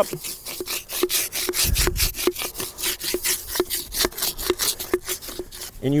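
An improvised wooden scraper rubbing and scraping inside the wooden bore of a sweet gum mortar in quick repeated strokes, knocking down the carbon buildup left by firing.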